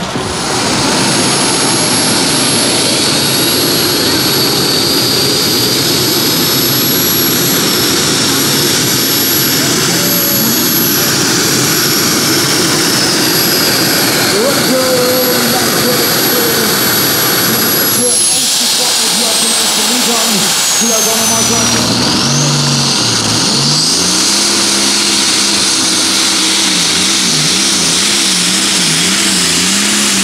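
Custom-built pulling tractors' supercharged multi-engine powerplants running flat out under load, loud and steady, with a high whine over them. About eighteen seconds in, the whine glides down in pitch and a lower engine note takes over, rising and falling as the throttle is worked.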